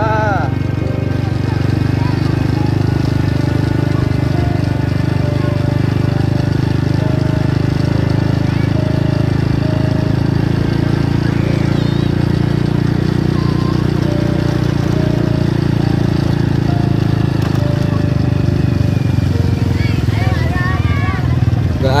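Small motorcycle engine running steadily at an even cruising speed, heard from the rider's seat.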